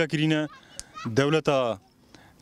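A man's voice speaking in two short phrases, with a brief pause between them and another near the end.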